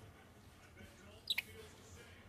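Green-naped lorikeet giving a short, sharp, high-pitched double chirp about halfway through, over a faint background hum.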